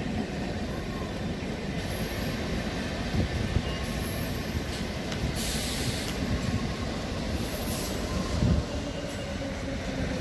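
Electric multiple-unit passenger train running past on the rails: a steady rumble of wheels on track, with a brief high hiss about halfway through and a short louder knock near the end.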